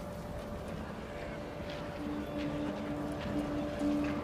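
Film soundtrack ambience: a low rumbling background with faint scattered clicks, under a steady high drone. About halfway in, a low musical note comes in and pulses in long held strokes.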